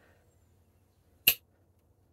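A Great Eastern Cutlery #36 slipjoint pocket knife's blade snapping shut under its backspring from upright. It gives one sharp click about a second and a quarter in.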